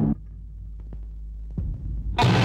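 Dramatic background music cuts off just after the start, leaving a low steady hum from the old film soundtrack with a few faint clicks and a soft thump near the end.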